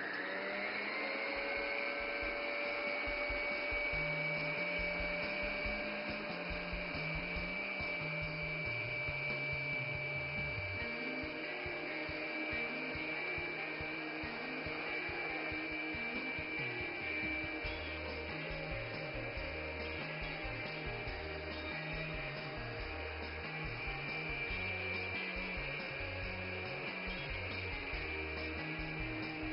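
Electric stand mixer whipping egg whites with its wire whisk: the motor's whine rises as it spins up in the first second, then holds one steady pitch.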